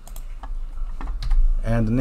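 Typing on a computer keyboard: a handful of separate keystrokes in the first second or so, over a steady low hum.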